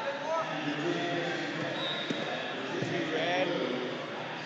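Background voices of coaches and spectators calling out across a large, echoing gym hall, with a couple of thuds about two and three seconds in.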